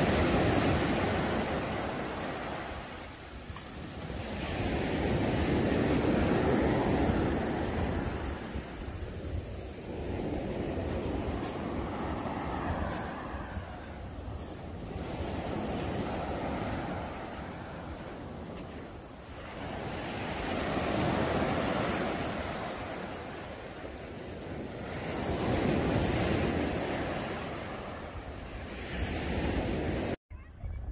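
Small waves breaking and washing up a sand-and-shingle beach, the surf swelling and fading every five seconds or so.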